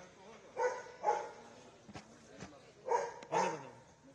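A dog barking: four short barks in two pairs, one pair about half a second to a second in and another about three seconds in.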